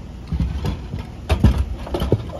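A few short, dull knocks, likely the carpenter moving about on the wooden subfloor, over a steady low rumble of background noise.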